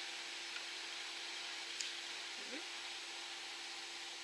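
Quiet room tone: a steady low hiss with a faint constant hum, and one light tick a little before halfway.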